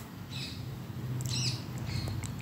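Small cage finches chirping: a short call about half a second in, then a louder cluster of high chirps about a second and a half in, over a steady low hum.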